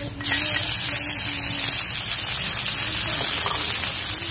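Sliced boiled sea snail meat dropped into a wok of hot oil with sautéed garlic, onion and ginger, setting off a sudden loud, steady sizzle a moment in.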